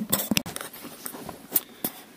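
Camera handling noise as the camera is moved around: a few light clicks and knocks with some rustling, a cluster in the first half-second and two more about a second and a half in.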